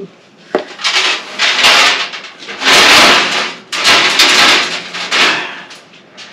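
Craft supplies being rummaged through and moved about by hand: a series of rustling, scraping handling noises, the longest and loudest about three seconds in.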